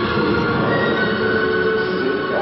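Mummy-themed video slot machine playing its electronic win music of held tones that change every half second or so, marking the end of a progressive bonus feature that paid out.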